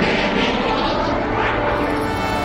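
A steady, engine-like rushing sound effect from an animated cartoon, holding an even level throughout.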